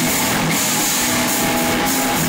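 Metal band playing loud in a small rehearsal room: heavily distorted electric guitars, bass and drum kit, overloading the camera microphone into a dense, even wash of sound.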